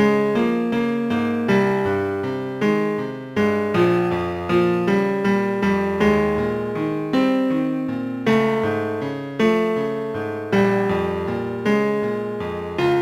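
Computer-generated piano playback of a two-part score: a slow, gentle melody over a steady broken-chord accompaniment, each note struck and then fading.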